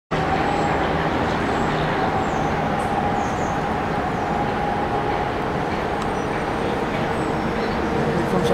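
Steady rumble and hum of Metro-North electric multiple-unit trains at a station platform. It carries a steady whine that fades about five seconds in, and a lower steady tone comes in about a second later.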